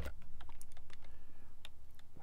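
Computer keyboard keystrokes: one sharp key press at the start, then a few scattered lighter clicks, over a steady low hum.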